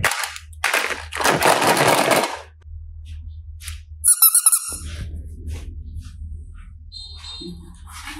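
Small hard-plastic toy suitcases clattering and rattling as a hand handles them. The loudest part is a dense burst of about a second early on. A quick run of sharp clicks follows about halfway through.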